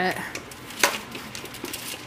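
A single sharp click a little under a second in, followed by a few faint small knocks from objects being handled.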